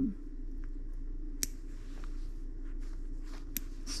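Small nail clippers snipping a puppy's toenails: a few sharp clicks, one about a second and a half in and two near the end, over a steady low hum.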